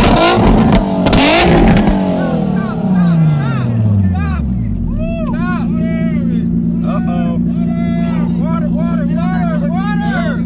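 A sports car's engine revved hard with sharp crackles from the flaming exhaust, then the revs fall away over a couple of seconds to a steady idle. Voices talk over the idling engine.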